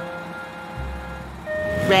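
Low engine rumble of cartoon vehicles at the start line, then a held electronic beep about a second and a half in: a race start-light countdown signal.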